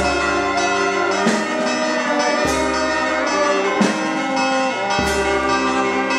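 Church bells ringing in a slow, even peal, a stroke about every second and a quarter, with a deeper bell sounding on every other stroke.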